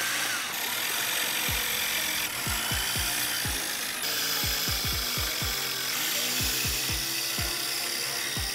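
Corded electric drill running steadily as it bores, a continuous even whir, under background music with a bass beat.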